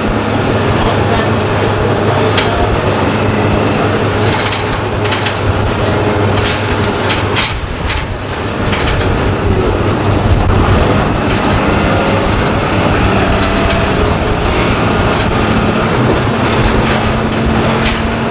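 A 1993 Orion V transit bus under way, its Detroit Diesel 6V92 two-stroke V6 diesel running with a steady drone, over frequent rattles and clatter from the body and fittings.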